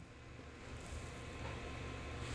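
Faint low hum and hiss: quiet room tone over a video-call feed.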